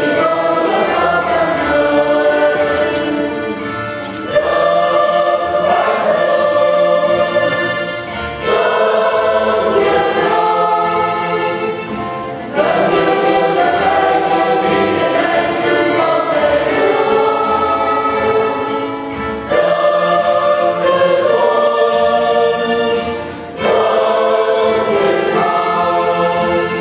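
Church choir singing an offertory hymn in phrases of a few seconds each, with short breaks between phrases.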